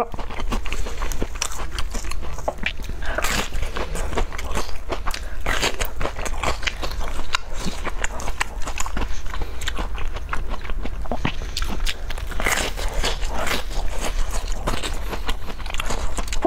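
Close-miked biting and crunchy chewing of a large glazed, waffle-patterned filled pastry, a dense run of small crackles with louder crunchy bites every few seconds.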